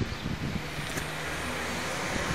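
A steady low motor hum, growing slightly louder toward the end.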